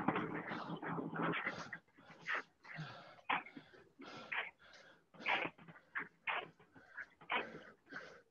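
A man breathing hard after a sprint, panting in short noisy gasps, heaviest in the first couple of seconds and then about two breaths a second.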